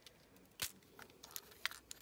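Hands handling small craft items over shredded crinkle paper: faint rustling with a few sharp clicks, the loudest a little over half a second in and a couple more near the end.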